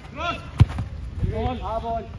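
A football kicked once, a single sharp thump about half a second in, among players' shouts.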